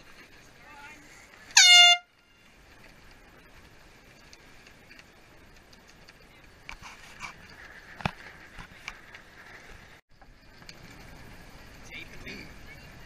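A single short air-horn blast, about half a second long, about one and a half seconds in: the race committee's sound signal as the class flag goes up in the start sequence. Afterwards only low wind and water noise with a few faint knocks.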